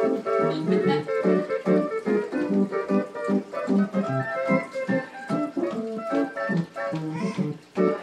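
A two-keyboard home electronic organ played with both hands: short, detached chords and notes in a quick, choppy rhythm.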